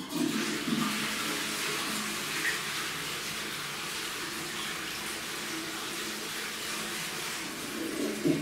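A toilet flushes: water rushes in suddenly, loudest for the first second, then runs on steadily with a faint low hum as the cistern refills.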